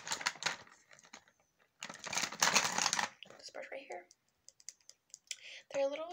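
Quick, dense clicking and rattling of makeup tools being handled, in two bursts: a short one at the start and a louder one about two seconds in.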